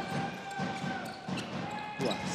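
Handball arena sound during play: regular low thumps about four a second, with a steady held tone over the hall's background noise.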